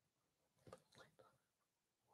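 Near silence, with a faint whispered murmur from about half a second to just past one second in.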